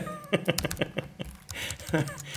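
Irregular clicking of a computer keyboard and mouse while editing audio, with a brief faint high-pitched vocal-like sound near the start and again near the end.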